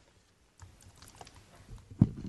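Quiet room with a few faint, irregular light clicks and taps: handling noise at a lectern microphone.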